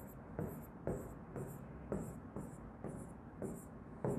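Faint pen strokes on a whiteboard as lines are written and marks erased: short scratchy strokes about twice a second.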